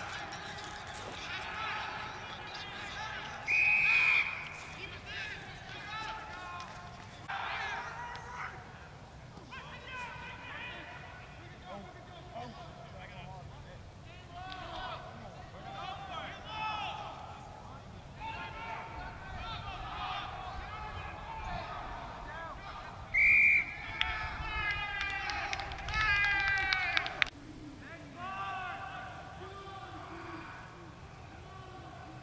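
Rugby players shouting and calling to each other across the pitch, with a referee's whistle blown twice: a short, steady blast about three and a half seconds in and another about 23 seconds in, the loudest sounds here. A flurry of shouting follows the second whistle as a scrum is set.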